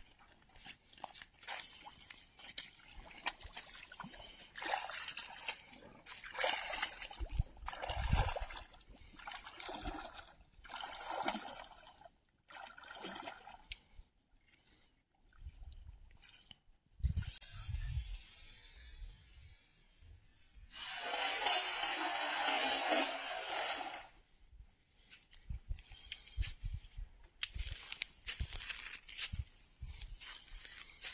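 Legs wading through shallow creek water, with irregular sloshing and splashing, then a cast net thrown and landing on the water: a longer rushing splash of about three seconds, well past the middle.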